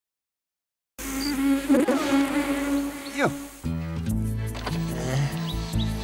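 After a second of silence, an insect buzzes with a wavering pitch, then drops away in a steep falling swoop. About two and a half seconds later music starts, with a steady bass line.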